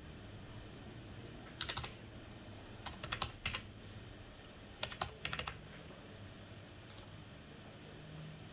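Computer keyboard being typed on in short bursts of quick keystrokes, as a number is entered: a few keys about one and a half seconds in, more around three and five seconds, then two sharp clicks near the end.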